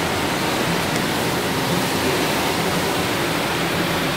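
Steady, even rushing noise at a constant level, like a continuous hiss of air.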